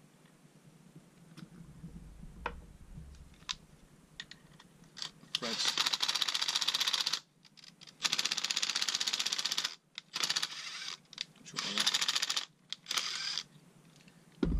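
Cordless impact driver hammering in about five short bursts of one to two seconds each with brief pauses, driving brass studs into a 3D-printed plastic holder. Light clicks of handling the parts come before the first burst.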